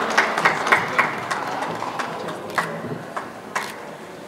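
Scattered hand clapping, a few claps a second, thinning out and fading over the first couple of seconds, then a couple of isolated sharp clicks.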